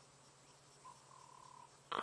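Near-quiet bush ambience over a faint low hum, with a single soft, steady whistled note from a small bird about a second in.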